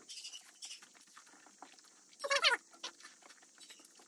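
Close-miked eating sounds of fried eggs being chewed: a run of small wet clicks and smacks, with one louder, short pitched squeak or slurp a little over halfway through.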